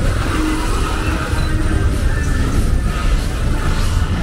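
Street traffic: cars running slowly past close by, a steady low rumble with engine noise over it.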